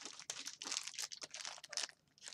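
Thin clear plastic parts bag crinkling as it is picked up and handled, a metal rod sealed inside it: a stream of quick, fine crackles that stops near the end.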